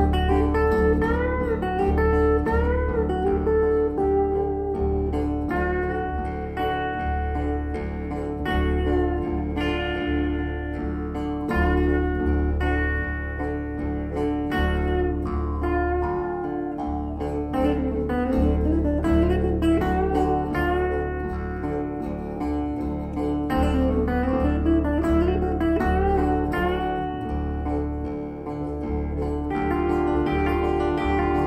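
Acoustic guitar strummed in a steady rhythm through an instrumental break, with a Jew's harp twanging a line that bends up and down in pitch over it.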